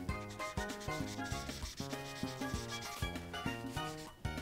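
The felt tip of a Prismacolor marker rubbing back and forth on the paper of a colouring-book page as it fills in a colour, over background music with a steady beat.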